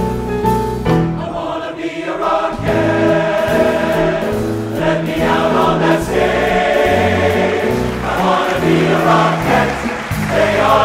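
A large men's chorus singing with musical accompaniment, in the bright, brassy style of a show tune; the music thins out briefly about two seconds in, then comes back fuller and louder.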